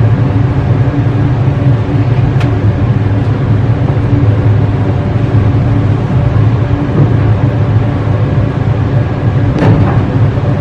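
Laundry machine running close by: a loud, steady low hum and rumble that holds level throughout.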